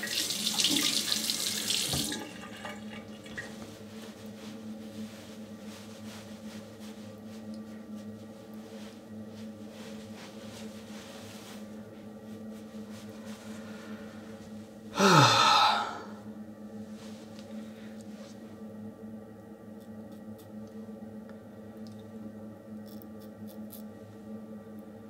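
Tap water running into a bathroom sink while the face is rinsed, stopping about two seconds in. After that a low steady hum remains, broken about fifteen seconds in by a brief loud sound that falls in pitch.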